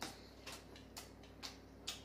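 A person chewing a mouthful of noodles with wet smacking, a short sharp click about every half second, five in all.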